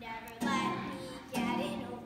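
A child singing a song over instrumental accompaniment, with new chords coming in about half a second and a second and a half in.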